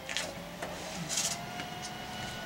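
Paintbrush scrubbed against canvas in a few short, scratchy strokes, the longest and loudest about a second in.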